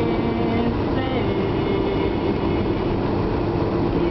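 Steady low rumble of road and engine noise heard inside a moving car's cabin on a country road.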